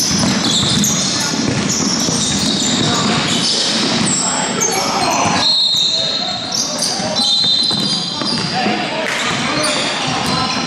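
Indoor basketball game echoing in a large hall: the ball bouncing on the court, sneakers squeaking in short high chirps, and players calling out.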